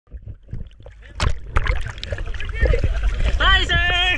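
Water splashing close to the camera at the sea surface, with two sharp splashes about a second in and a steady low rumble of water. Near the end a person's voice calls out, its pitch rising, falling and wavering.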